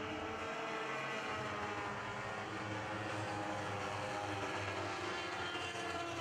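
Lightning sprint cars racing, their 1000cc factory-stock motorcycle engines running together in a steady, high-pitched drone.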